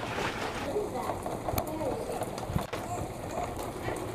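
Steady heavy rain falling, with children's voices faint in the background and a couple of soft knocks.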